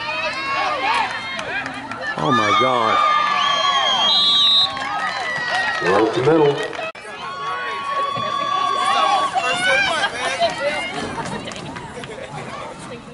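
Spectators at a youth football game shouting and cheering during a play, many voices yelling over one another, some drawn out into long calls.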